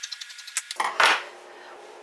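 Scissors cutting across blouse fabric, the blades giving a quick run of small snipping clicks, followed by one short louder noise about a second in.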